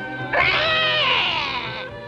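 Cartoon cat giving one long, drawn-out meow that sags slightly in pitch, over background music with held notes.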